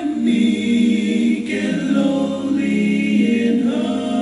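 Group of voices singing a slow hymn, holding long notes and moving to a new chord about every second.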